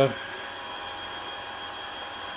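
Upright vacuum cleaner running steadily on carpet: an even rush of air and motor noise with a few thin, steady high whines over it.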